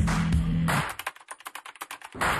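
Closing ident music: a held chord with a low bass note that stops just under a second in, followed by a rapid run of typewriter keystrokes as a sound effect.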